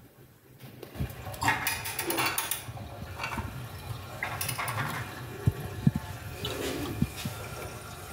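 Water running in a concealed toilet cistern, a steady rushing hiss that starts about a second in, with scattered clicks and knocks as the chrome flush plate is handled against its frame, the sharpest knocks about two-thirds of the way through.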